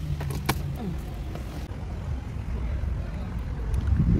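Low, steady car-cabin rumble, with a single sharp click about half a second in.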